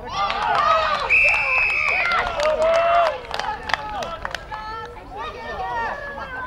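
Spectators at a youth rugby match shouting and cheering loudly, with a referee's whistle blown once, held for about a second, just over a second in. The shouting dies down after about three seconds.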